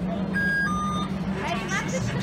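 Turnstile card reader giving a short electronic two-note beep, a higher tone stepping down to a lower one, as a travel card is read.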